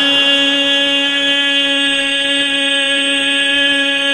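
A man's voice holding one long, steady sung note through a microphone and loudspeakers, the drawn-out end of a line of devotional chant.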